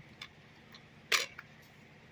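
A plastic DVD keep case snapping open: one sharp click about a second in, with a few faint ticks around it.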